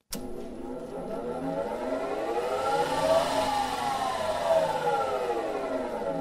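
Electric lumber-cutting saw switched on and running: the motor gives a steady hum with a whine of several tones that glide up and down, crossing about halfway through.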